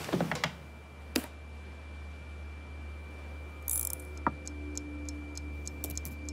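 Soft, evenly spaced ticking like a clock, growing regular in the second half, over a steady low hum and a thin high tone. A few scattered clicks come earlier.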